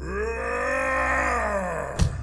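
A man's long, drawn-out groan, one unbroken vocal sound whose pitch rises and then falls, ending with a sharp click.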